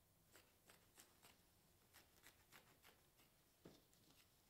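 Faint, irregular snips of trauma shears cutting up the front of a shirt, a few per second.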